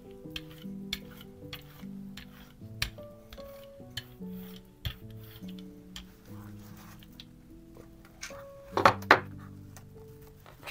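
Soft background music of slow held notes, with light scattered taps from art tools being handled on a tabletop and two loud sharp clacks about nine seconds in.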